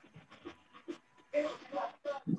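Voices over a video call: faint breathy sounds, then a short spoken burst about a second and a half in.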